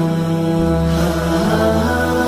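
Layered male voices humming a slow, wordless melody in long held notes over a low sustained vocal drone: the a cappella intro of a nasheed, with no instruments.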